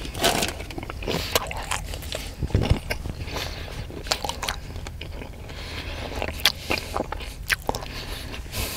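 A person chewing crunchy food close to the microphone: irregular crunches and wet mouth clicks, with a sharper cluster of crunches near the end.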